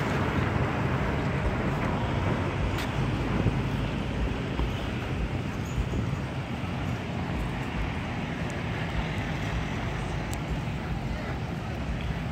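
Steady low rumble and hiss of wind on a handheld camera's microphone while walking outdoors, with faint voices of people nearby.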